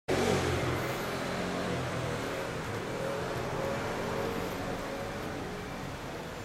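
Kawasaki Vulcan 900 Classic's V-twin engine running steadily at idle, slightly louder in the first half-second.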